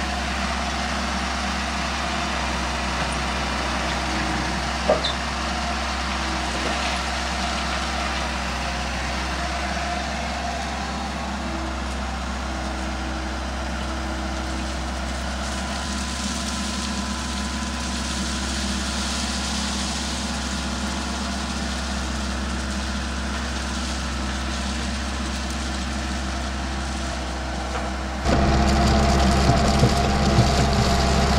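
Komatsu PC78 compact excavator's diesel engine running steadily under hydraulic work while a bucket of crushed stone is tipped out, the stone pouring off as a hiss about halfway through. The engine becomes suddenly louder near the end.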